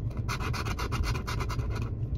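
A coin scratching the coating off a scratch-off lottery ticket in quick, rapid back-and-forth strokes, about ten a second, starting a moment in.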